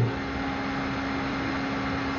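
Steady background hiss with a low, even hum, with no distinct events.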